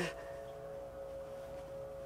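Faint, steady droning hum of distant machinery, with a high held tone over lower steady notes. A short laugh sounds at the very start.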